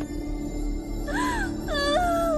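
Dramatic background music holding a steady low drone, with a woman's anguished wailing cries arching up and down in pitch from about halfway through.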